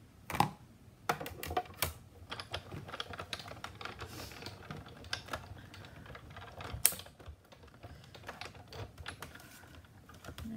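Irregular clicks and taps of plastic cutting plates and a metal die being handled and set down on a Big Shot die-cutting machine, with two sharper knocks about half a second in and near seven seconds.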